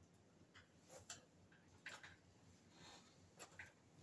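Near silence: quiet room tone with a handful of faint, scattered clicks.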